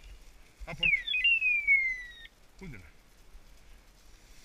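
A loud electronic chirp that sweeps down once, then slides steadily lower in pitch for about a second, with short spoken commands to a dog before and after it.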